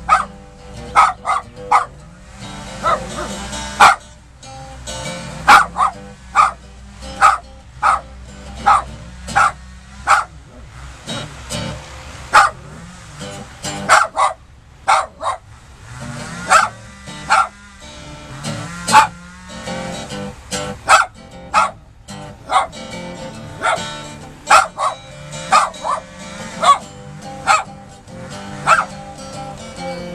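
A small dog barking over and over at acoustic guitar blues, short sharp barks coming one to three at a time, several every few seconds, with the strummed guitar going on underneath.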